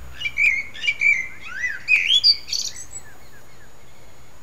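A songbird singing one phrase of about two and a half seconds: varied whistled notes with rising and falling glides, ending in a higher, thinner twitter.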